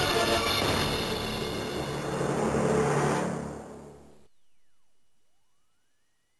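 Music and sound effects played back from an Ultraman Trigger Power Type Key toy. The sound fades over about a second and cuts off about four seconds in, leaving a faint tone that sweeps down and then back up.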